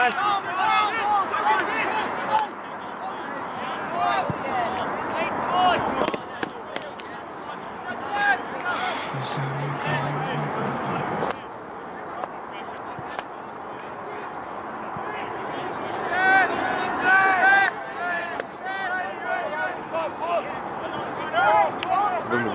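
Distant shouting and calls from rugby players and spectators, words unclear, over steady outdoor background noise, loudest about two-thirds of the way through.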